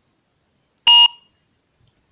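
A phone barcode scanner gives a single short electronic beep about a second in, the signal that the barcode has been read successfully.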